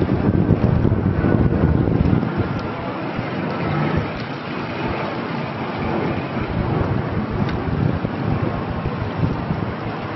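Wind buffeting the microphone, gustier and louder over the first two seconds, then steadier.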